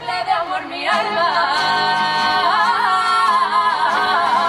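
Women's carnival murga chorus singing together with acoustic guitar accompaniment. After a short, broken start, the voices hold long notes from about a second in.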